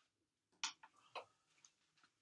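Mostly quiet, broken by about four short clicks, the loudest a little over half a second in: a plastic water bottle being handled.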